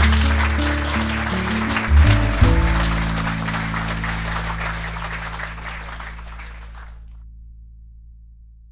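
Audience applause over background music with sustained low notes. The whole mix fades out gradually, the applause dying away about 7 seconds in while the music fades on.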